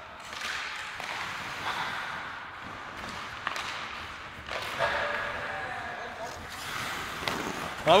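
Ice hockey skates scraping and carving the ice during play, with a few sharp clacks of sticks and puck, and a distant player's shout about five seconds in.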